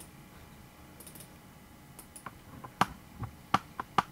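Quiet room with about half a dozen short, sharp clicks from a computer mouse and keyboard being used, spaced irregularly and mostly in the second half.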